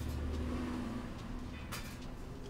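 Low rumble of a vehicle passing on the street outside, heard through the café's glass door, then a sharp click near the end as the door is opened.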